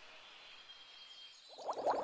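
Faint outdoor ambience at a pond after a trumpet call has ended, with music starting to build in about one and a half seconds in.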